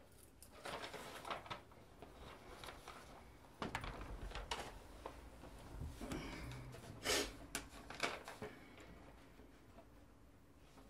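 Faint rustling and handling noises with a few soft knocks: a sheet of paper being handled and a man sitting down in an upholstered chair. The sharpest knocks come about three and a half seconds in and again about seven and eight seconds in.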